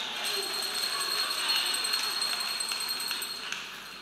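Audience applause in a hall, dying down near the end.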